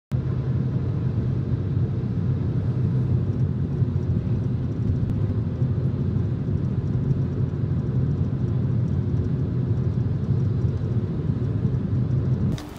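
Steady low drone of a car driving at highway speed, heard from inside the cabin.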